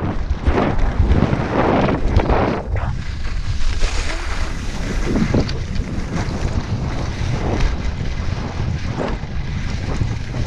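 Wind buffeting the camera microphone while skiing downhill, with skis scraping over packed snow in a run of turns that swell and fade every second or two.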